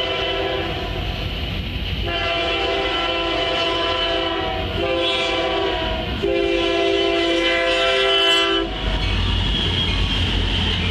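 Diesel locomotive horn, a chord of several tones, blowing the grade-crossing signal: the end of a long blast, then long, short, long, the last stopping near the end. Underneath, the rumble of the approaching train grows as the leading Union Pacific locomotive reaches the camera.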